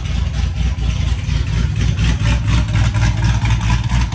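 Supercharged 6.2 L LT4 V8 of a C7 Corvette Z06 idling steadily, a low even pulsing rumble.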